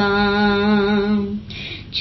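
A solo voice reciting a devotional salaam holds one long steady note, which stops about a second and a half in, followed by a short breath-like hiss before the next line.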